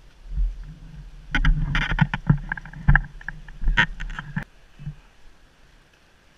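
Firefighter turnout gear handled close to the microphone: a quick run of sharp clicks, knocks and rustles of heavy fabric and gear between about one and a half and four and a half seconds in, over low thumps.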